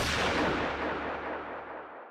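A single gunshot's echo rolling away and fading steadily over about two seconds, the sharp crack landing at the very start.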